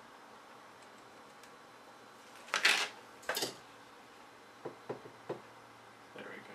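Hands handling a copper heat-pipe CPU heatsink: two short noisy rushes about two and a half seconds in, then three light clicks near the end.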